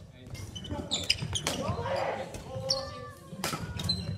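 Badminton rackets striking a shuttlecock in a doubles rally: sharp hits about a second in, again shortly after, and twice near the end, echoing in a large gym hall.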